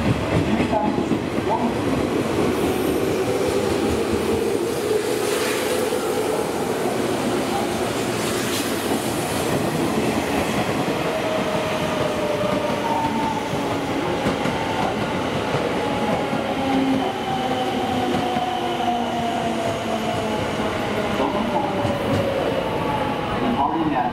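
JR West 201 series electric train pulling out, its motors giving a rising whine as it accelerates, with wheels clacking over rail joints. Later a second electric train, a 281 series Haruka limited express, runs along the next track, its motor tones falling.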